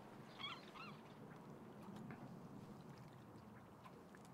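Near silence with a faint steady hush. About half a second in, a bird gives two short calls in quick succession.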